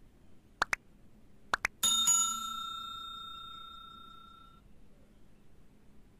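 Subscribe-button animation sound effect: two pairs of quick clicks, then a small bell struck once, ringing out and fading over about three seconds.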